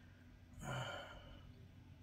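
A man's short, sighing "uh" about half a second in, breathy and low. The rest is quiet room tone with a faint steady hum.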